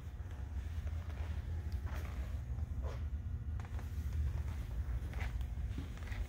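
Low, steady room rumble with a few faint footsteps about two, three and five seconds in.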